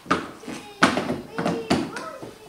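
About four sharp clicks and knocks as a chrome door handle is pushed and snapped into its clips in a pickup truck's door.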